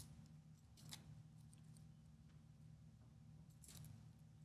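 Near silence: a steady low room hum with three faint clicks of laptop keys being pressed, one at the start, one about a second in and one near the end.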